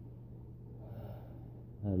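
A person's soft breath about a second in, over a steady low hum, in a pause between words; a man starts speaking again near the end.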